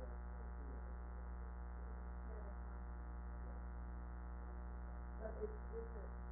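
Steady electrical mains hum in the sound system, with a faint, distant voice talking off-mic now and then, most clearly near the end.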